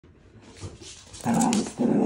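A Cavalier King Charles spaniel makes short vocal calls, faint at first. Then comes a loud call a little past the middle, and a second starts just before the end.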